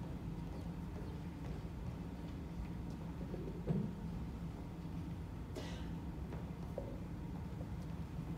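Quiet auditorium room tone: a steady low hum, with a brief small noise a little under four seconds in and a short faint hiss a couple of seconds later.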